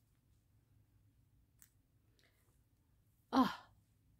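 Near silence with a faint low room hum and one small tick midway, then near the end a woman says a single falling 'Oh'.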